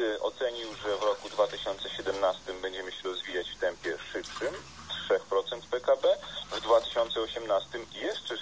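Speech from a broadcast playing through a loudspeaker in a small room, with a faint high whine that comes and goes.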